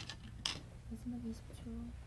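Go stones clicking against each other in a wooden bowl as a player picks out a white stone: a light click, then a sharper one about half a second in. A faint brief murmur of a voice follows.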